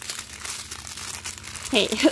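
Small plastic bags of diamond-painting drills crinkling in a rapid run of crackles as a bundle of them is handled and squeezed together to be packed away.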